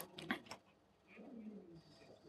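Faint speech in the background, with a few sharp clicks in the first half second.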